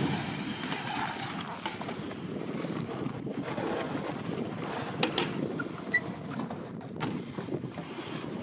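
BMX tyres rolling and carving on a mini ramp with a steady rumble, with a few sharp knocks from the bike landing and hitting the ramp, about five and seven seconds in.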